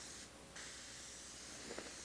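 Airbrush spraying paint on canvas: a soft, steady hiss of air that drops out briefly about a quarter second in, then carries on.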